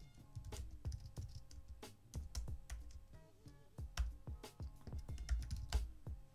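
Typing on a computer keyboard: a run of irregular keystrokes entering a command.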